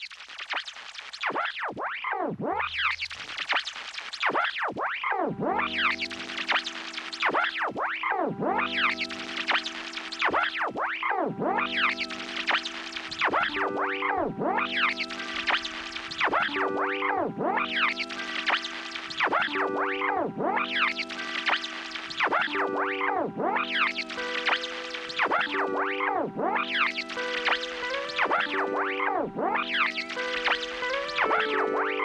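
Electric guitar processed through a Eurorack modular effects rack: notes smeared into repeating swooping pitch bends. From about five seconds in, sustained tones pile up into a layered drone, thickening further as it goes.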